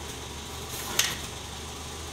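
Steady low hum and hiss of background noise, with one sharp click about a second in.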